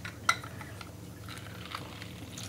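Hand-held lemon squeezer being pressed over a plastic food-processor bowl: a few light clicks and taps, the sharpest about a quarter second in.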